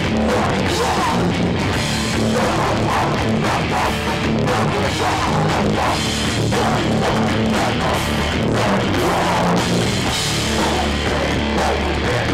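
Hardcore punk band playing live: distorted electric guitar, bass and a pounding drum kit, loud and dense throughout, as heard in a small hall.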